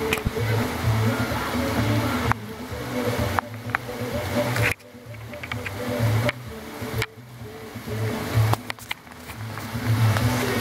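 Heavy downpour of thunderstorm rain falling steadily, with music playing underneath. The overall level drops suddenly a few times and then builds back up.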